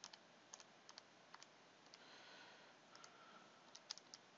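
Faint, irregular clicks of keys being pressed as a calculation is entered into a calculator.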